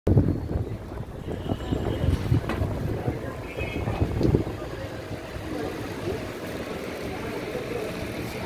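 Low, uneven rumbling and knocking from a handheld phone being carried, with wind on the microphone. It is heaviest in the first half, then settles into a steadier low background noise.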